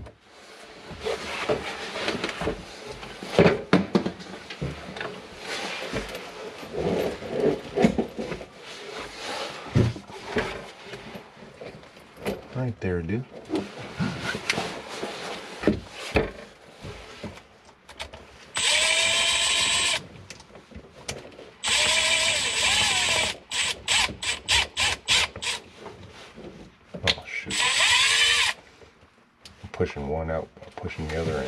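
Knocks and rattles of tools and parts being handled in a sink cabinet, then a Milwaukee M12 cordless drill-driver running in three short bursts of a second or so, with a run of quick clicks between the second and third.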